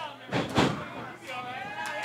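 A wrestler's body slams once onto the wrestling-ring mat about half a second in, as his legs are kicked out from under him. Faint voices from the crowd follow.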